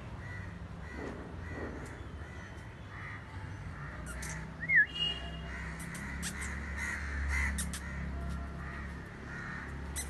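Birds calling outdoors: a string of short, harsh calls repeating, with one loud, sharp call just before five seconds in.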